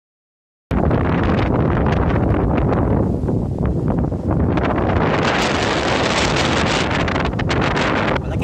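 Strong wind buffeting the microphone: a loud, steady rumble with gusty rustling that starts suddenly about a second in.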